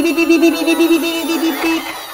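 Toy city bus's electronic sound module playing a warbling beep that flips quickly between two close pitches, set off by pressing the bus; it cuts off near the end.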